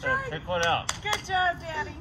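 Excited high-pitched children's voices calling out wordlessly, with a few sharp clicks about a second in.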